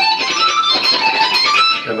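Semi-hollow electric guitar playing a quick pull-off lick: a fast run of single notes, each sounded by the fretting fingers pulling off the string rather than by the pick.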